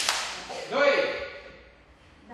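A group of children shouting together in unison during a kung fu drill, one loud call just under a second in that fades away, after a sharp crack at the very start.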